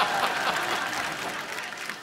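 Studio audience applauding and laughing, the clapping tapering off toward the end.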